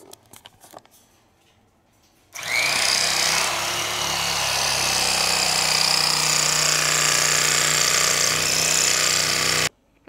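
Electric carving knife starting up a couple of seconds in and running steadily, a steady motor hum with a hiss, as its blades saw through a foam mattress; it cuts off suddenly near the end.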